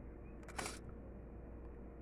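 One short, sharp click-like rustle about half a second in, over a faint steady low hum.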